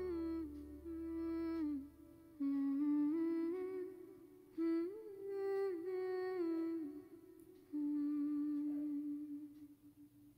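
Soft, slow humming of a gentle melody in phrases at the close of a romantic Hindi song; the accompaniment drops away about two seconds in, leaving the humming almost on its own. It ends on a long held note that fades out near the end.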